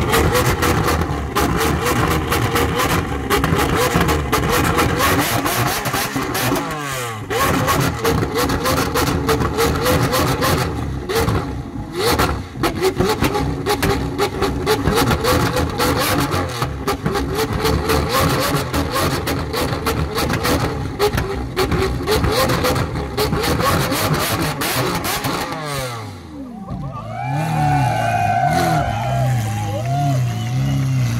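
Lamborghini Aventador SV's naturally aspirated V12 being revved repeatedly from standstill, the revs falling away about 7 seconds in and again near 26 seconds, then settling to a lower, steady idle near the end.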